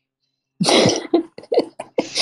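A person laughing, starting about half a second in with one loud breathy burst and going on in a run of short, quick bursts.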